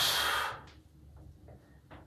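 A lifter's forceful exhale under strain while pressing a heavy barbell on the bench: a short grunt that turns into a loud rush of breath, dying away about half a second in.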